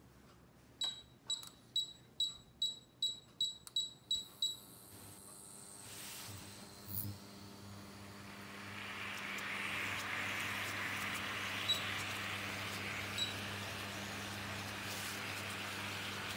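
Miele KM5975 induction cooktop's touch controls beeping about nine times in quick succession as the power is stepped up. Then a steady low hum comes from the cooktop while water in a stainless steel pan starts to hiss louder and louder as it heats toward the boil, with two faint single beeps near the end.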